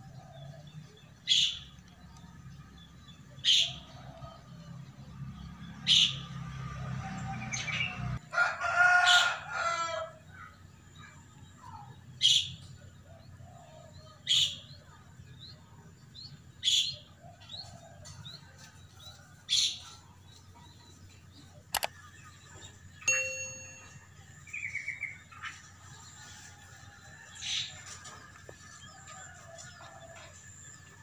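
A bird repeats a short, high call about every two seconds. A rooster crows once about eight seconds in, the loudest sound here. A low hum underneath cuts off suddenly just before the crow.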